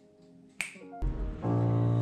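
A single sharp click about half a second in, then a Kawai ES8 digital piano begins playing loud sustained chords, the opening of a piano accompaniment for a classical song.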